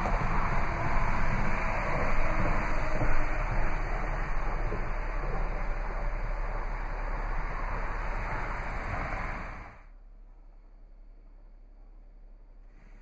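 A steady rushing noise with a low hum underneath, cutting off abruptly near the end.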